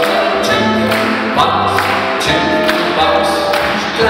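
A live big band playing swing music, with horns carrying the tune over a steady beat.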